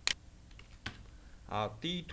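Computer keyboard keys clicking a few times as a number is typed in, the first click sharpest, followed near the end by a man saying a short word.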